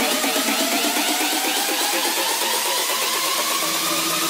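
Electronic 'doble tono' car-audio dance track in a build-up: a tone rising slowly in pitch over a fast, even pulsing pattern.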